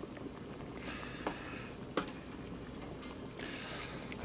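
Pot of salted water at a rolling boil with potato pieces in it, bubbling steadily, and a metal utensil knocking sharply against the stainless steel pot twice, at about one and two seconds in, as a potato piece is lifted out.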